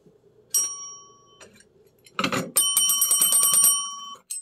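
Desk service bell with a yellow base: one ding about half a second in that rings out for about a second, then a fast run of repeated dings for the last second and a half.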